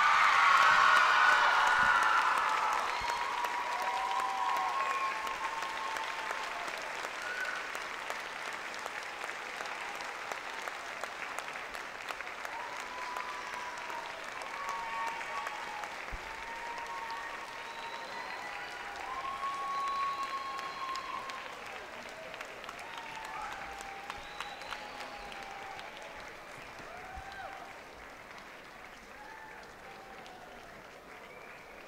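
Audience applauding, loudest at first and slowly dying down, with scattered voices calling out over the clapping.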